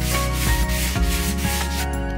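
Hand sanding with a sanding sponge, smoothing dried spackle on an MDF panel and trim. Quick back-and-forth strokes, about four a second, stop near the end.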